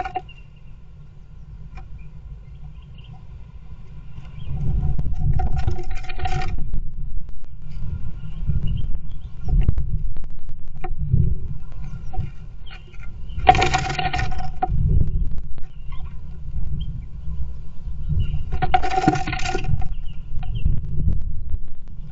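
A great tit moving about inside a wooden nest box: claws scratching and scraping on the wooden floor, with knocks and rustles as it shifts around. Three loud, pitched sounds of about a second each break in: about five seconds in, near the middle, and near the end.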